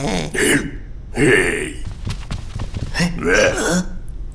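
Wordless cartoon-character voice sounds: grunts and babble in three short outbursts, with no real words.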